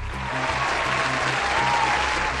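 Applause sound effect, a steady clapping haze, played over background music with a repeating low beat.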